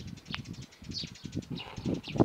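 Small songbirds chirping and twittering: quick repeated high chirps and trills, with one thin rising note just after the start, over a low rustle.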